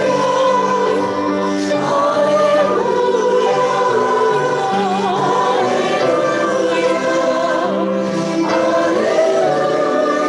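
Several voices singing a slow hymn together in long held notes, some with vibrato.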